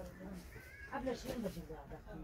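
Quiet, indistinct talking voices.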